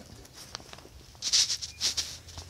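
Two brief, scratchy metal scrapes in the second half, from a steel latch bar being handled against the steel tank door it holds shut.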